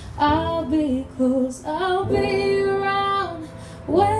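A woman singing with keyboard accompaniment: a short phrase near the start, then a line that rises into a note held for over a second.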